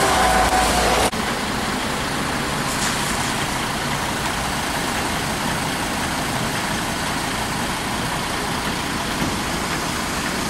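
Flatbed tow truck winching a car up its ramps onto the bed: a whining winch tone that cuts off suddenly about a second in, then steady mechanical running noise from the truck's engine and winch.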